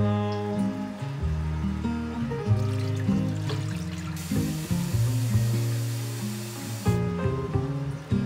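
Background music, an instrumental passage of a song, runs throughout. Midway, for about three seconds, a kitchen tap runs water into a glass vase, starting and stopping abruptly.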